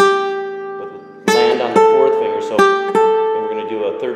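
Nylon-string classical guitar fingerpicked in E minor. An E minor chord with the low E string in the bass rings and dies away over about a second. Then four more notes are plucked one after another and left ringing.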